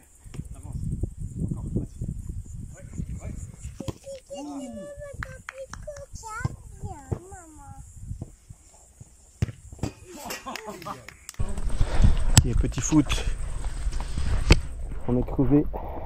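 Children's voices calling out and talking over a low rumbling background, which gets louder about two-thirds of the way through, with a couple of sharp knocks late on.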